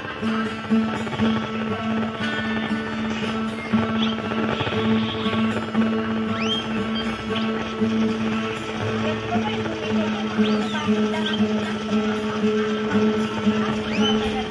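Acoustic guitar playing a dayunday accompaniment, with steady held low notes under a continuous, rhythmic pattern.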